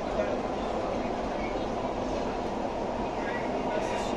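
Steady running noise inside a moving Dubai Metro carriage, with a faint steady whine over the rumble.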